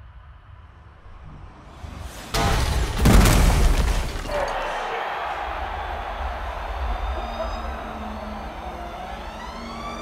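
A sudden heavy crash impact about two and a half seconds in, the loudest event, fitting a Formula 1 car striking the barrier at high speed. It is followed by a long noisy rumble, with tones that glide up and down near the end.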